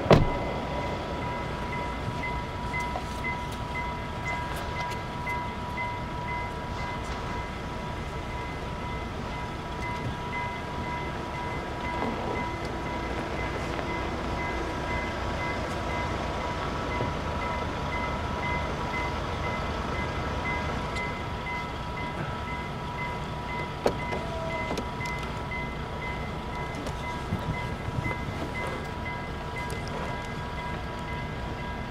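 Level crossing warning bell ringing on and on in a fast repeating pattern, over the low rumble of a train rolling slowly through the crossing. A sharp knock comes right at the start.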